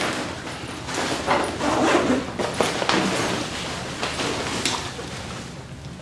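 A backpack's clamshell main compartment being zipped open and folded out by hand, in a series of irregular zipper pulls and fabric rustles with a few knocks.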